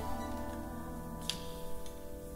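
A chamber ensemble of strings, winds and piano holds a soft chord that slowly fades, with no singing. Two faint clicks sound a little past halfway and near the end.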